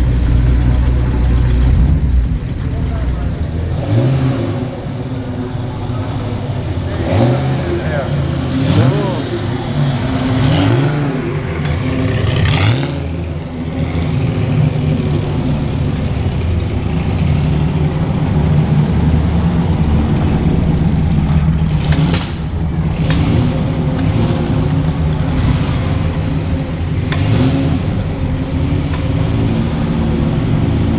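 Classic and vintage car engines running and being revved as the cars drive off one after another, the engine pitch rising and falling several times early on in the middle stretch, with a single sharp click about two-thirds of the way through.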